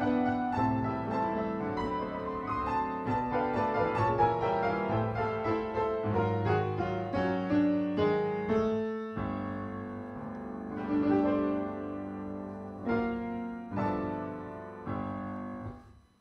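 Solo piano playing a loose, improvised ending: busy runs of notes for about nine seconds, then a handful of separate struck chords that die away just before the end.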